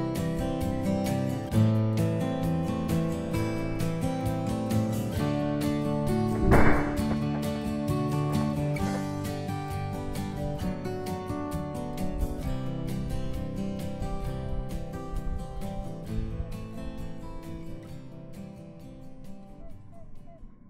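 Acoustic guitar music with picked and strummed notes, gradually fading toward the end. About six and a half seconds in, a brief loud burst of noise cuts through it.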